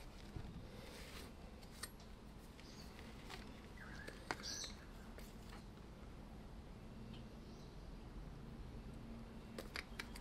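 Quiet room tone with a few faint, short clicks and taps scattered through it.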